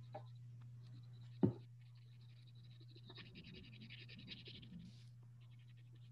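Faint scratching of crayon being rubbed over paper while colouring, over a steady low hum, with a single short knock about one and a half seconds in.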